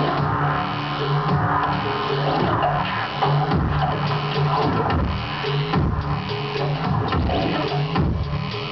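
Live electronic music played on laptops and controllers: a sustained low bass line under repeated percussive hits and a dense synthesized texture.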